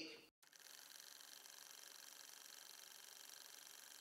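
Near silence: a faint steady hiss, starting just after a brief total dropout.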